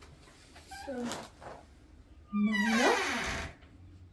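A teenage girl crying aloud: a short wailing sob about a second in, then a longer, louder wail just past halfway.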